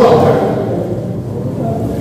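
A man's amplified voice trailing off at the start with the echo of a large hall, then a steady low rumble of room noise through the microphone while the speaker pauses.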